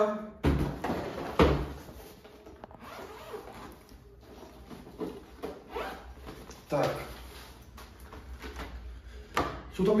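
A padded fabric carrying bag being lifted out of a cardboard box and set down on a wooden table, with two sharp knocks in the first second and a half, then rustling handling as the bag is unzipped and opened.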